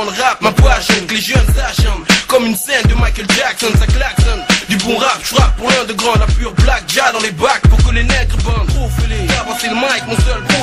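Hip-hop track: a beat of hard, closely spaced drum hits with a voice over it, and a deep bass that drops out at first and comes back in about eight seconds in.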